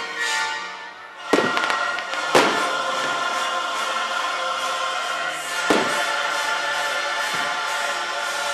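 Fireworks going off in three sharp bangs, a little over a second in, about a second later, and near six seconds in, over steady choral music.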